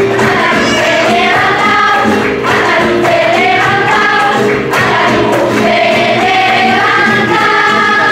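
School children's choir singing a flamenco song in unison, with long, bending sung phrases, accompanied by flamenco guitar.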